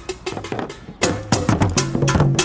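Atumpan, the Asante talking drums, a pitched pair struck with sticks, playing a quick run of strokes that grows louder and denser about halfway through. The strokes sound out the tones of spoken words and phrases in drum language.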